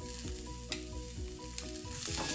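Asparagus frying in olive oil in a nonstick pan over high heat: a steady sizzle, with a faint melody of sustained notes underneath and one light click a little under a second in.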